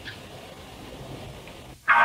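Faint, steady background noise with no distinct event: the room tone of the soundtrack between lines of dialogue. It drops out briefly just before the end.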